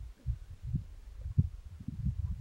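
Wind buffeting the microphone: irregular low rumbling pulses that come faster and louder toward the end.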